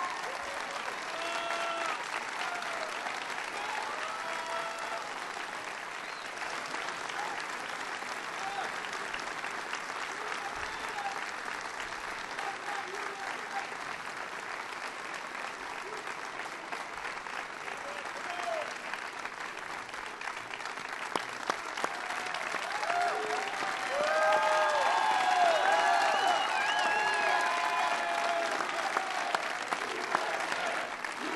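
A large indoor crowd applauding steadily, with voices calling out over the clapping. The applause and shouting swell louder for the last several seconds.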